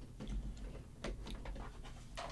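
Faint scattered clicks and light rustling of small tools being handled while searching for guitar radius gauges.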